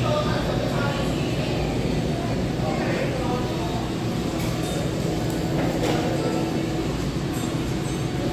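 Restaurant dining-room ambience: a steady low rumble with indistinct voices in the background.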